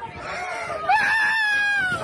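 A long, high-pitched cry starting about a second in, rising briefly and then holding, slowly falling in pitch.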